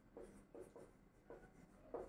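Faint chalk strokes on a blackboard as a word is written: a handful of short scratches and taps.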